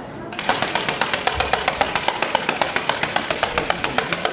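A rapid, even run of sharp percussive strikes, about seven a second, starting about half a second in, over a murmuring crowd.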